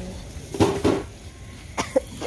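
A person coughing twice in quick succession, then a single sharp click near the end.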